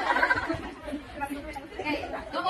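Indistinct chatter of several people's voices in a large hall.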